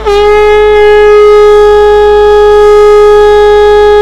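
Conch shell (shankh) blown close to a microphone: one long, loud, steady note.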